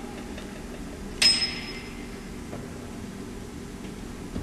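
A single sharp metallic clink about a second in, ringing briefly at a high pitch. It comes from the monstrance or the brass-framed glass door of its throne being handled at the altar, over a low steady room hum.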